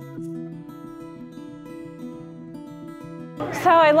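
Background music with a plucked acoustic guitar. Near the end a woman starts speaking.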